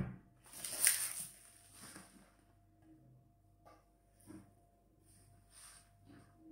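A kitchen knife and wooden cutting board being handled: a brief scrape about a second in, then a few faint, widely spaced knocks of the knife on the board as green onion stalks are cut.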